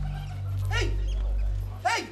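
A woman gives two short wailing cries over background music with a deep, steady bass.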